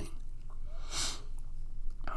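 A single short sniff through the nose, about a second in.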